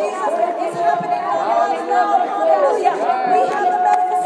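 Several voices praying aloud in tongues, overlapping one another without a break, with a long drawn-out syllable near the end.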